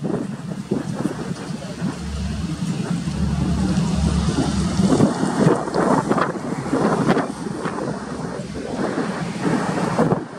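Strong wind buffeting the microphone in gusts, heaviest with a low rumble from about two seconds in, over the drone of a Convair 580's turboprop engines on final approach.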